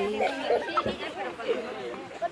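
Several people talking over one another, with some laughter.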